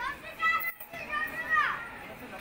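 A high-pitched voice, like a child's, calls out twice in short shouts, the second call falling away at its end.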